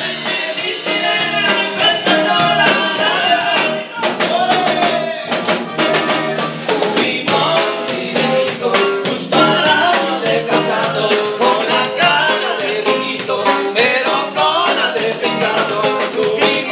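Live Latin band music: men singing together into microphones over strummed and plucked guitars and a steady percussion beat.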